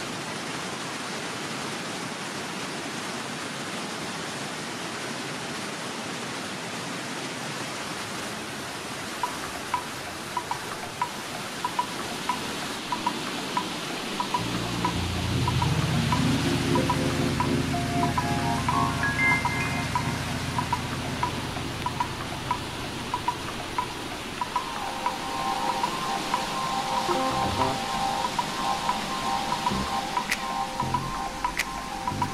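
Mountain stream rushing over rocks, a steady rush of water. Background music comes in about nine seconds in with soft, evenly repeated high notes, and sustained low chords join about halfway through, louder than the water.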